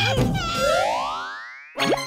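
A cartoon sound effect: a long glide that rises in pitch and fades away over about a second, then music cuts in abruptly just before the end.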